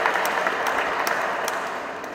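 Audience applauding, the clapping fading away over the two seconds.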